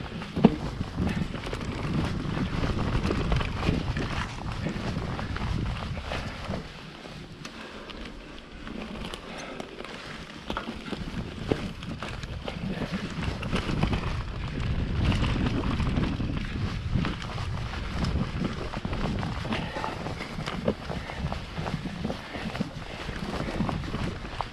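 Mountain bike ridden over a forest dirt trail: tyres rumbling on the ground with wind buffeting the microphone, and frequent clicks and rattles from the bike, including a sharp knock about half a second in. The low rumble eases for a few seconds near the middle, then picks up again.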